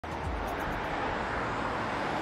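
A steady rushing noise with no clear pitch, starting abruptly at the very start.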